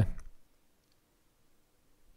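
A man's spoken word trails off at the very start, then near silence: quiet room tone with a couple of faint clicks about half a second to a second in.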